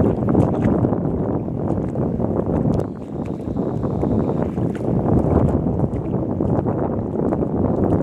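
Wind buffeting the microphone: a loud, steady low rumble with a brief lull about three seconds in.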